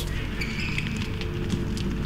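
Footballs being tapped and kicked on an indoor hall floor, faint scattered knocks, under a steady quiet background music bed.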